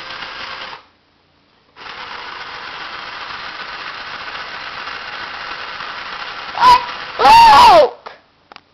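A remote-control toy Caterpillar D9L bulldozer's small electric motors and gears whirring steadily. They stop for about a second near the start, then start again. Near the end come two loud, high, wavering sounds, the second longer.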